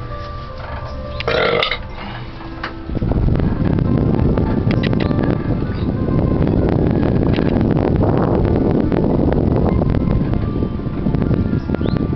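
A short burp about a second in, then, from about three seconds in, a sudden loud rushing rumble with scattered rattles inside a moving cable-car gondola.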